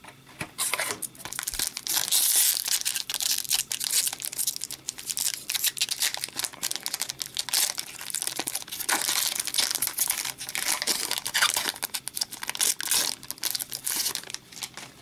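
Foil wrapper of an Upper Deck hockey card pack crinkling as it is handled and torn open: a dense, crackly rustle full of sharp crinkles, heaviest a couple of seconds in and again through the second half.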